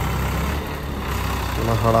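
Farmtrac 45 tractor's diesel engine running steadily under load while reversing and pushing soil with a rear blade.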